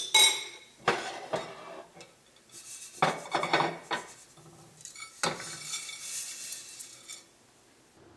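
Clinks and scrapes of a stainless steel pan and a utensil as dry, golden-roasted vermicelli is tipped out onto a ceramic plate, the strands rustling as they slide. A sharp ringing clink opens it, followed by several knocks.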